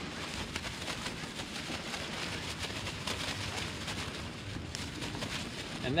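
Plastic bag crinkling and rustling steadily as it is shaken to coat tailor fillets in flour and chili flakes.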